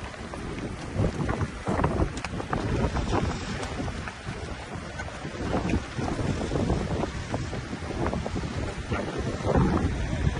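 Wind buffeting the microphone outdoors, a steady low rumble, with scattered faint knocks mixed in.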